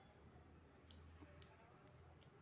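Faint, close-miked mouth sounds of chewing soft flatbread and curry: a few sharp, wet clicks, the clearest about a second in.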